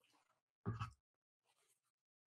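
Near silence broken by one short, soft sound about two-thirds of a second in, as a man wipes his face with a paper tissue, and a fainter trace a little later.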